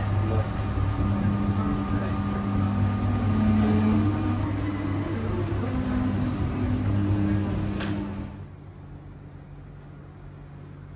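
Electric drive motors in an observatory dome running: a steady low hum with a whine that steps up and down in pitch. A click comes just before eight seconds in; the motor stops soon after, leaving a fainter steady hum.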